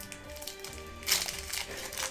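Foil wrapper of a Yu-Gi-Oh! Dark Crisis booster pack crinkling and tearing as it is ripped open by hand, starting about a second in, over quiet background music.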